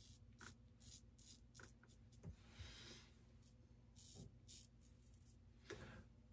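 Faint, short scratchy strokes of a Timeless titanium open-comb safety razor cutting through lathered stubble, scattered irregularly, with one slightly longer stroke about halfway through.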